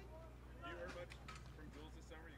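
Faint, distant speech: a reporter asking a question away from the microphone, over a steady low hum.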